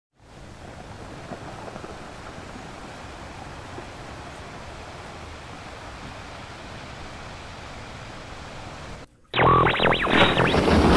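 A steady, even hiss with no rhythm or pitch. Just after nine seconds it cuts out briefly, then a loud, sudden boom-like intro sound effect starts.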